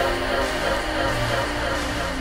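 Background music: a slow song with sustained instrumental tones and no vocal in these seconds.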